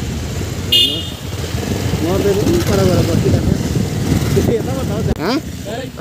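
Motorcycle being ridden on a rough road, its engine and road noise running with a short horn beep about a second in. The riding noise drops away suddenly about five seconds in.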